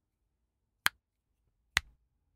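Two sharp finger snaps inside a car's cabin, about a second apart, the second with a short ring after it.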